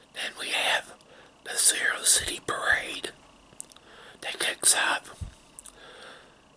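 A man whispering close to the microphone in several short phrases with brief pauses between them.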